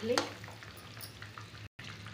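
Besan pieces simmering in thin gravy in a steel kadhai over a gas burner: a faint, even sizzle, with a few light clicks of a steel ladle against the pan about a second in.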